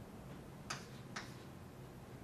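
Chalk striking a blackboard twice, two sharp taps about half a second apart, over faint room tone.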